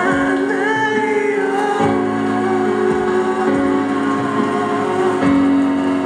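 Live band music: sustained organ chords that change every second or two, with a voice singing over them.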